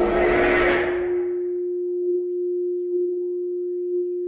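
Electronic music in a breakdown: a single synthesizer note held steady, with a hissing noise swell fading away over the first second or so and no drum beat.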